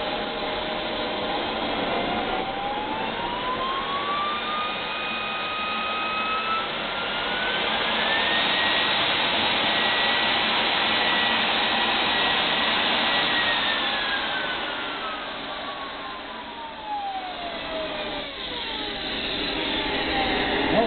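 TJT80N kerosene model jet turbine running under a steady rush of jet noise. Its whine climbs in two steps over the first eight seconds as it spools up, holds high for about five seconds, then winds back down over the next five.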